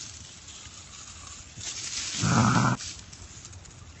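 A man's short, strained groan about two seconds in, a pained reaction to a mouthful of habanero-hot dog-food sludge, over faint rustling.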